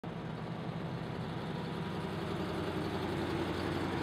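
Jeep Wagoneer's engine running steadily at low speed as the vehicle rolls closer, growing slightly louder.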